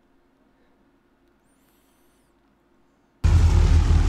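Near silence for about three seconds, then a sudden, loud, deep rumble from the anime episode's soundtrack cuts in and continues.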